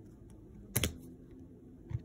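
A hard plastic card holder clicks sharply once as a card is handled and set aside, with a smaller click just before the end.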